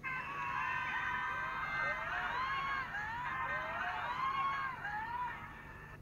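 Soundtrack of an edited-in TikTok clip: a high voice or vocal music whose pitch swoops up and down in short arcs. It starts and cuts off abruptly.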